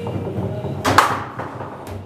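Foosball table in play, with a sharp, loud clack about a second in, just after a lighter one.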